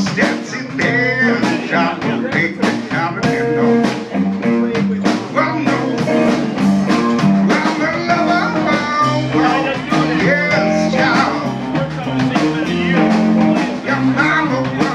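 Live band playing a blues-rock number with guitar, bass and drums, and some singing.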